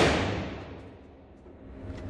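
The echo of a gunshot fired a moment before, ringing through the concrete indoor range and dying away over about a second and a half.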